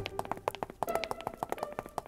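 Quiet cartoon underscore: sparse, light plucked notes mixed with many quick soft taps.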